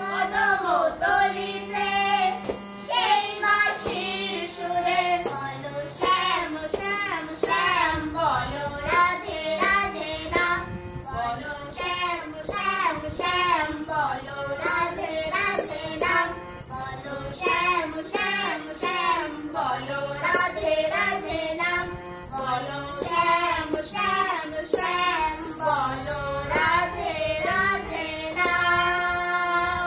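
A woman and a young girl singing a Bengali Krishna bhajan together, accompanied by a harmonium, over a steady beat of sharp percussive strikes.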